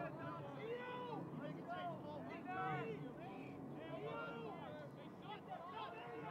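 Voices of players and coaches calling out across an outdoor lacrosse field, heard from a distance through the field microphone, with short shouts scattered throughout.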